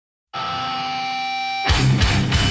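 A heavy metal song starts: a held, ringing guitar chord comes in about a third of a second in, then drums and distorted guitars crash in with the full band near the end.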